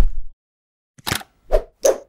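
Sound effects of an animated logo sting: a noisy swish that cuts off about a third of a second in, then, after a brief silence, three short pops in quick succession.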